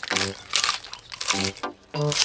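Cartoon sound effect of a tortoise biting and crunching a lettuce leaf, a few short crisp crunches, over light background music.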